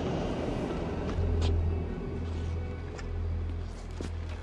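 A car engine running under a low, steady droning music score.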